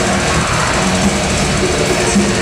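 Death metal band playing live at full volume: heavily distorted guitars over very fast, dense drumming, a continuous wall of sound.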